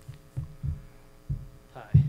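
Several dull low thuds, irregularly spaced, as a person walks up to a table microphone and sits down, over a faint steady electrical hum. A man says "Hi" near the end.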